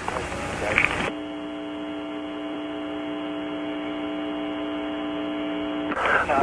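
A second of hiss with a brief faint voice fragment. Then, from about a second in, a steady electrical hum of several held tones on a muffled, telephone-like audio line.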